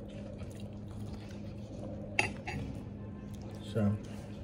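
Eating grilled fish by hand: a sharp click about two seconds in and a softer one just after, over a steady low hum, with a brief voiced 'mm' near the end.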